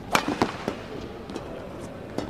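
Badminton racket smashing a shuttlecock with a sharp crack just after the start, followed within about half a second by two fainter sharp knocks on the court.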